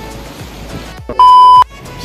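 A loud electronic beep at one steady high pitch, lasting about half a second a little past the middle, cutting off sharply.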